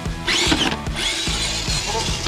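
Electric motor and geared drivetrain of a Losi Night Crawler 2.0 RC rock crawler whining as it is throttled: a quick rise and fall in pitch, then a longer steady high whine from about a second in. Background music with a steady beat runs underneath.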